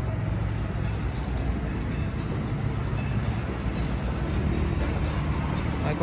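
Car engine idling: a steady low hum that holds even throughout, with no sharp noises.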